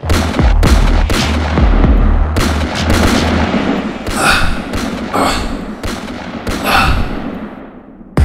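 Dubbed pistol gunshot sound effects in a rapid series of sharp cracks, each trailing off in reverberation. The shots come further apart and grow fainter toward the end.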